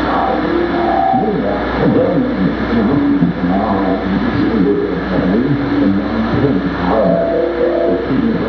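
Loud, continuous experimental noise music played live: a dense wash of warbling pitched tones that glide up and down over a steady low rumble.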